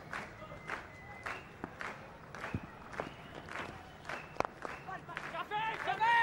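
Cricket stadium crowd: a murmur of many voices and scattered clapping, with two short steady whistle tones. A single sharp crack of bat on ball comes about four and a half seconds in.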